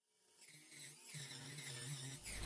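Dremel rotary tool running in a drill press stand, cutting grooves into a small wooden piece; it fades in faintly about half a second in and grows louder, a steady motor hum with a hiss of cutting over it.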